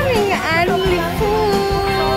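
Background music with a sung voice: the voice glides up and down, then holds one long note from about halfway through.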